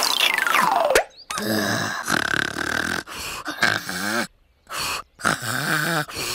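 A cartoon bunny's wordless vocal sounds: short grunting, growl-like noises in several bursts. A falling whistle-like glide in the first second leads in, and there are brief dead-silent gaps.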